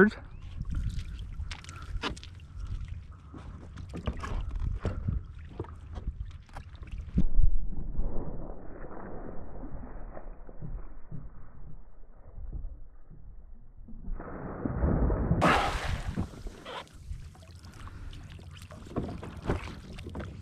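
Cast net being thrown and hauled from a kayak: water sloshing and splashing, with scattered knocks and rattles of net and gear being handled. A sudden burst of splashing water comes about three-quarters of the way through.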